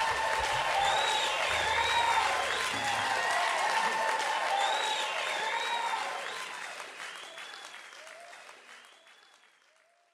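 Live concert audience applauding and cheering, with shouts and whistles over the clapping, while the last low sound of the band dies away in the first few seconds. The applause fades out steadily to silence over the last four seconds.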